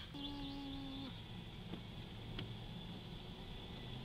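Truck driving on a wet road, heard from inside the cab: a steady low rumble from the engine and road. A held, slightly falling note sounds over it for about the first second.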